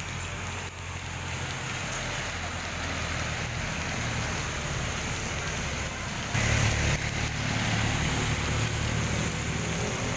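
Steady rain falling on a wet street, with a motor vehicle's engine and tyres on the wet road getting louder from about six seconds in.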